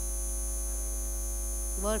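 Steady electrical mains hum from the microphone and sound system, with a voice saying "work" near the end.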